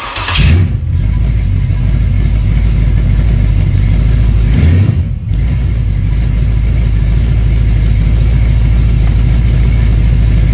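Chevy 350 small-block V8 starting through open headers with no mufflers, catching at once on the initial timing set with the MSD distributor's magnetic pickup. It revs up just after catching, is revved again about five seconds in, then runs steadily.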